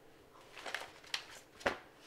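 A few brief rustles and light taps of a paper magazine being handled and set down on a sofa, the sharpest one a little past the middle.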